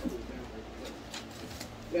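Faint background voices in a room, with a few light ticks.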